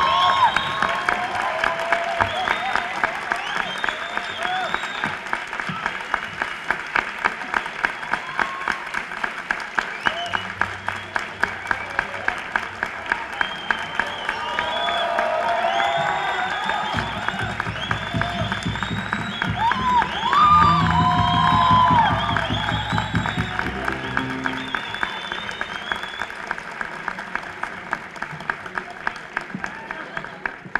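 Concert audience applauding in rhythmic unison, about two claps a second, with cheers and shouts rising over it. The applause thins out near the end.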